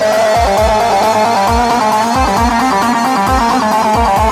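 Live Turkish folk dance music from a wedding band: an electronic keyboard plays a fast, ornamented melody over a steady kick-drum beat.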